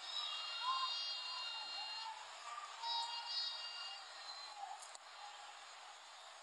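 Faint football stadium crowd ambience as heard on a match broadcast, with distant voices and shouts and some faint sustained chanting or singing.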